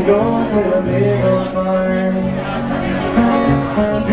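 Live country-folk song played on a strummed acoustic guitar, with held low notes that change every second or so under the chords.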